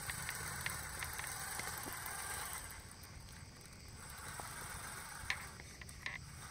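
Scale RC rock crawler driving over rough ground: its electric drivetrain whirs, swelling in the first couple of seconds and again near the end, with scattered clicks and rattles of the truck working over rocks.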